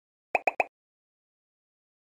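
Three quick pop sound effects, a little over a tenth of a second apart, each a short pitched blip, marking animated clicks on on-screen like, share and subscribe buttons.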